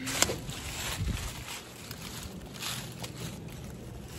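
Wind rumble and handling noise on a handheld phone microphone as its carrier walks, with a few faint knocks and rustles.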